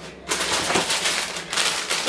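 Thin plastic bag of chopped salad lettuce crinkling and rustling as it is picked up and handled: a dense, rapid crackle starting about a third of a second in.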